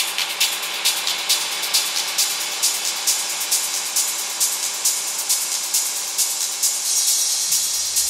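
Techno music with the bass filtered out, leaving steady, crisp percussion hits about twice a second over a mid-range pad. Near the end a bright swell rises and the deep bass comes back in.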